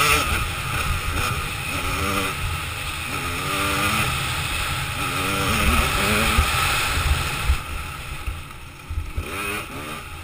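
Dirt bike engine revving up again and again as it accelerates along the trail, with rough wind rumble on the microphone. The engine eases off about eight seconds in, then revs up again near the end.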